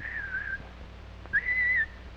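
Two short whistled notes. The first wavers and falls slightly over about half a second; the second, louder and a little higher, starts about 1.3 seconds in and holds for about half a second before dipping at the end. Steady hum and hiss from the old film soundtrack sit underneath.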